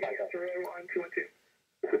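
Only speech: launch-control radio voice loop, a man talking over a narrow, radio-like channel, pausing briefly after about a second before the next call begins near the end.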